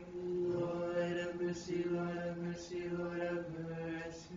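Orthodox liturgical chant by a male voice, sung on one steady reciting tone in short phrases.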